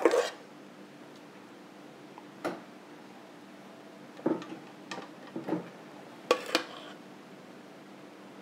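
A large metal spoon clinking and scraping against a stainless steel mixing bowl while scooping out cheesecake batter: a handful of short, irregular knocks spread through the seconds.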